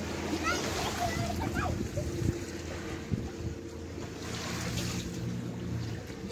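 Sea water sloshing and splashing, with a steady low engine hum from a boat throughout. Faint, distant voices call out briefly in the first two seconds.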